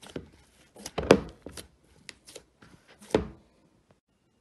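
Salt playdough being kneaded by hand in a bowl: a series of irregular thumps and knocks as the dough is pressed and pushed against the bowl, the loudest about a second in and just after three seconds in.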